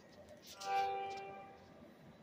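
A small click as a charging cable goes into a phone, then a short pitched chime from the phone, fading out over about a second: the sound that it has started charging.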